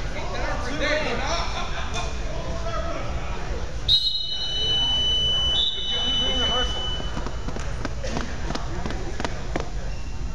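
Voices chattering in a large gym hall around a wrestling mat. About four seconds in, a sharp loud onset is followed by a high steady two-note signal tone, such as a whistle or scoreboard buzzer, lasting about three seconds.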